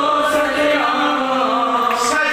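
A man's voice chanting a devotional hymn, holding one long note at nearly the same pitch.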